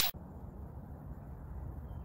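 Faint, steady low background rumble of an outdoor recording, with no distinct event in it.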